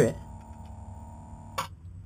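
A bilge pump running with a faint steady hum after its float switch is lifted, then a single sharp click of the float switch about one and a half seconds in as the float is tipped.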